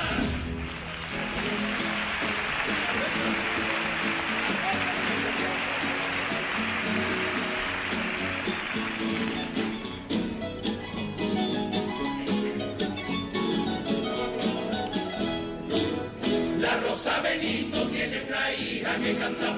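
Theatre audience applauding after a choral passage ends. About ten seconds in, the coro's plucked-string band of guitars and bandurrias starts a rhythmic instrumental passage, and the choir's voices come back in near the end.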